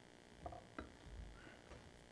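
Faint handling noise at a lectern picked up by its microphone: a soft knock about half a second in and a short sharp click just after, as a water glass is set down, over a low hum.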